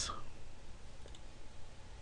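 A faint computer mouse click about a second in, over a low steady hum of room tone.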